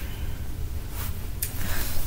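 Low steady rumble of room and microphone noise, with a brief rustle about one and a half seconds in as a person moves close beside the microphone.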